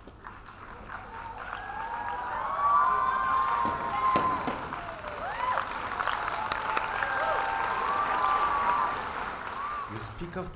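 Audience applauding and cheering, with raised voices over the clapping. It builds over the first few seconds and eases off near the end.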